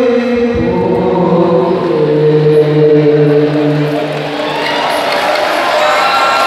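Live traditional music: a chanted vocal line of long held notes stepping from pitch to pitch, growing fuller near the end.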